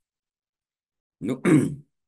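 Silence for about the first second, then a man says one short word and clears his throat once, briefly.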